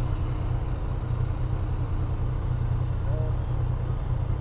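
Motorcycle engine running with a steady low rumble while the bike rides along, heard from a helmet-mounted camera.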